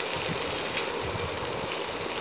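Green chickpeas, sliced onion and green chilli sizzling steadily in butter in a frying pan.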